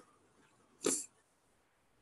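Mostly quiet, broken once a little under a second in by a single brief, breathy sound from a person.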